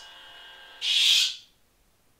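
Lightsaber sound-board effect through a small speaker: a faint hum, then about a second in a short hissing burst as the LED blade switches off.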